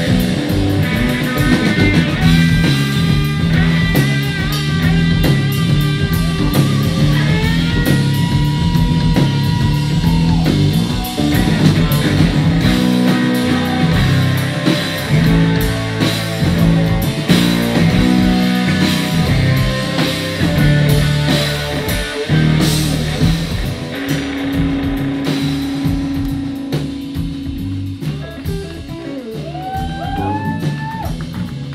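Live instrumental rock from an electric guitar, bass guitar and drum kit. The guitar plays held notes with upward bends about seven seconds in and again near the end, over a driving bass line and steady drumming.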